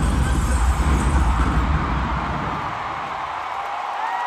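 Deep bass from an arena concert's sound system fades out over the first two seconds or so. A steady wash of crowd noise in the large hall is left behind.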